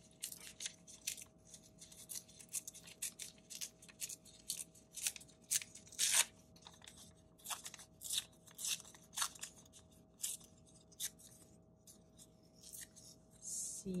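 Paper being torn by hand into small pieces: an irregular series of short rips and crinkles, the loudest about six seconds in.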